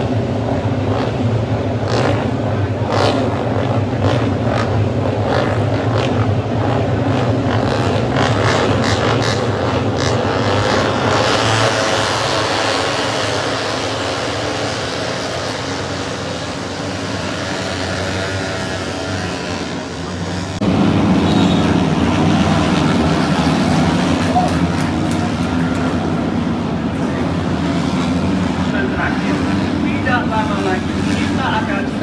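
MotoGP racing motorcycles' engines running as the field goes along the main straight, heard from the grandstand, with pitches rising and falling as bikes go past. The sound steps up louder about two-thirds of the way through.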